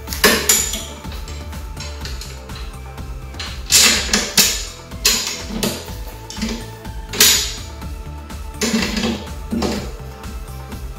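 Background music, with metal clinks and knocks from a steel push-mower handle and its bracket bolt being fitted together by hand: about seven sharp clicks spread over the few seconds.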